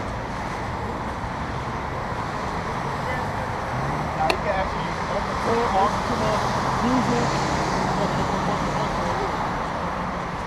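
A steady low engine hum over road traffic noise, with faint voices talking from about four seconds in.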